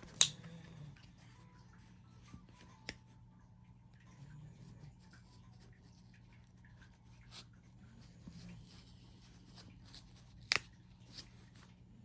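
Hands prying at a plastic-and-cardboard trading-card blister pack that is hard to open: a few sharp plastic clicks and crackles with quiet between. The loudest click comes just after the start and another comes near the end.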